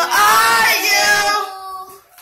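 Young child's voice in long, high, drawn-out notes that bend in pitch, fading out about a second and a half in.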